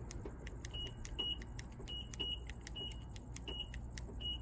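A car's electronic warning beeper sounding a string of short, high beeps, some in pairs, about eight in all, over the faint steady low hum of the 2019 Acura ILX's 2.4-litre four-cylinder idling, with a few small clicks.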